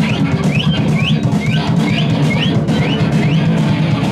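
Live rock band playing loud: electric guitar over a drum kit, with a run of short rising high notes repeating about twice a second.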